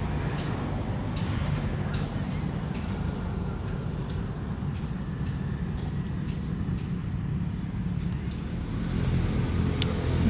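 Steady low rumble of a running motor engine, with a few light clicks scattered through it.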